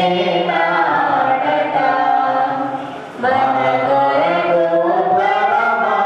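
A group of voices singing a hymn together, on long held notes. The line breaks off about three seconds in, and the next line begins straight after.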